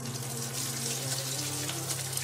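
Hot oil sizzling and crackling in a deep pot as egg-battered pieces are dropped in to deep-fry.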